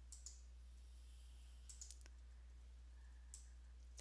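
Near silence with a few faint computer mouse clicks: two at the start, a quick cluster around the middle and one more near the end, as a PowerPoint slide show is started and advanced.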